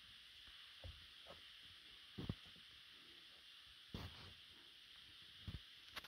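Near silence: a faint steady hiss with four soft thuds spaced about a second or two apart.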